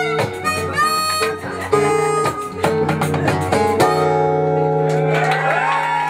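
Harmonica playing melody lines over strummed acoustic guitar and hand percussion as the song ends, settling on a held final chord about four seconds in. Audience cheers and applause begin near the end.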